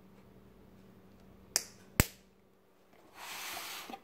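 Two sharp plastic clicks about half a second apart, the second the louder, made by fingernails picking the protective plastic wrap off the hard caps of acrylic paint squeeze bottles. A short hiss follows near the end.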